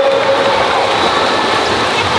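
Steady splashing of children flutter-kicking on kickboards in an indoor swimming pool, a dense continuous wash of water noise.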